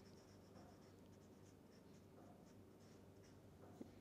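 Faint short strokes of a felt-tip marker writing on paper, drawing a line and then a few letters, over a low steady room hum.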